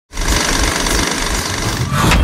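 Electronic sound effect of an animated logo intro: a loud, dense buzzing noise with rapid low pulses that starts suddenly just after the start.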